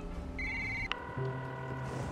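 A telephone ringing tone from a call that is not answered, over soft sustained background music. A sharp click comes about a second in.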